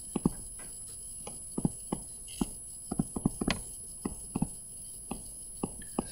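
Light, irregular taps and clicks, a few each second, some in quick pairs.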